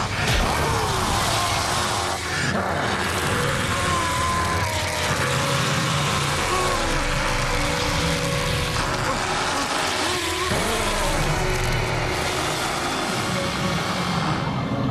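Loud, dense sci-fi TV soundtrack: the steady rushing, droning sound effect of a Wraith's hand-to-chest feeding, here giving life back, under dramatic music, with a man's strained vocal sounds.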